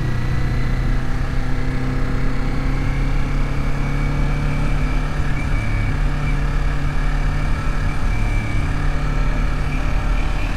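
Kawasaki Z400's parallel-twin engine running steadily while under way, its pitch rising slightly in the first second and then holding even. A steady rush of wind and road noise runs underneath.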